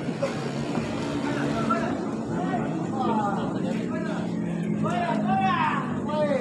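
Spectators' voices calling out and chatting at a small-sided football match, with several rising-and-falling shouts in the second half, over a steady low hum.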